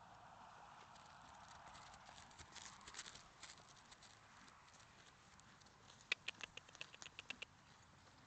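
Faint hoofbeats of a young foal trotting on grass, then a quick run of about a dozen sharp clicks in under two seconds, about six seconds in, as it comes up close.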